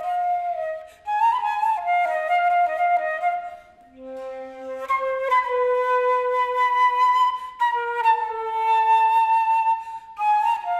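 Solo concert flute playing a contemporary piece in held notes, often with two pitches sounding at once, in phrases broken by short gaps about a second in and about four seconds in.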